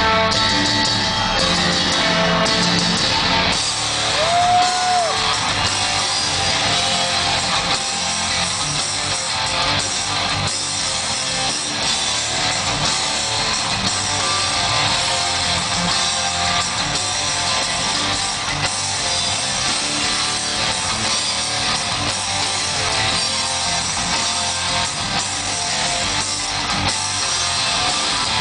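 Live heavy rock band playing in an arena: distorted electric guitar and bass with drums, heard from within the crowd with the hall's reverberation. A short rising-and-falling call from the audience rises above the band about four seconds in.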